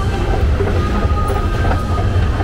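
Escalator running, a steady low mechanical rumble as it carries a rider upward.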